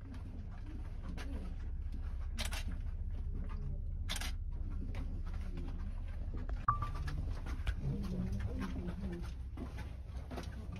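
Low steady rumble in a narrow stone tunnel, with two brief scuffs about two and a half and four seconds in and a sharp click a little before seven seconds.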